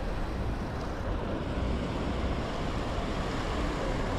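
Steady low rush of wind buffeting the microphone while riding a road bike, with no distinct events.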